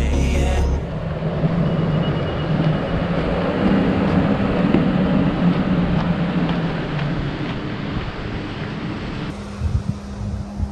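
Convoy of off-road SUVs and pickups, among them a Honda Passport and a Toyota Tacoma, crawling up a rocky gravel trail, with engine sound that swells and fades as they pass and wind on the microphone. Music ends about a second in.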